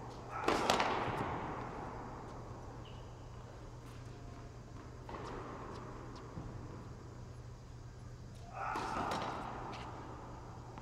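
Sharp knocks with a long echo in a large indoor tennis hall, loudest about half a second in and again about five and eight and a half seconds in, over a steady low hum.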